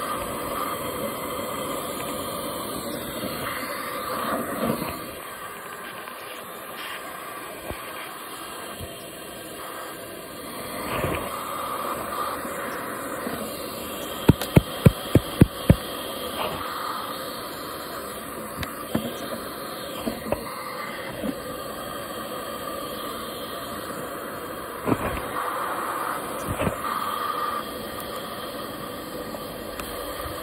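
Bee vacuum running with a steady hiss of suction at the hose nozzle as it draws bumblebees out of their ground tunnel. A quick run of about seven sharp clicks comes near the middle, and a few single clicks follow later.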